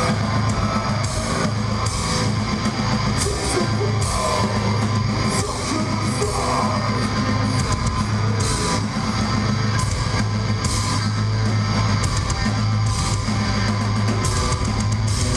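Heavy metal band playing live and loud: electric guitars and a drum kit, with repeated cymbal crashes over a heavy low end.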